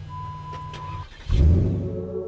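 Jeep Grand Cherokee WK2's 3.6-litre Pentastar V6 being started. A thin steady beep lasts about a second, then the engine fires with a loud burst about a second and a half in and keeps running.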